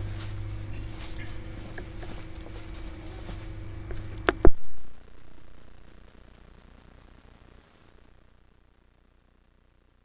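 Steady low machine hum with a few light ticks. It stops with a loud click about four and a half seconds in, and the sound then fades to near silence.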